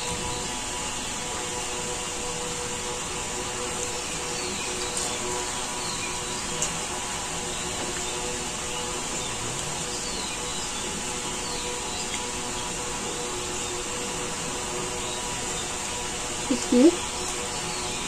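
A steady, unchanging hum with a high hiss, like a small electric motor running, with a couple of faint clicks. A short spoken word comes near the end.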